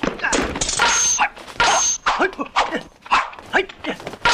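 Film fight sound effects: a quick run of whooshes and thwacking blows, about three or four a second, mixed with the fighters' short shouts and yelps.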